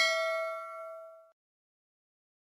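Notification-bell ding sound effect of a subscribe-button animation ringing out with several clear tones at once, fading away within about a second and a half.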